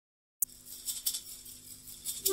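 Start of a song: silence, then about half a second in a click and a few light, high rattling percussion strokes over a faint low hum.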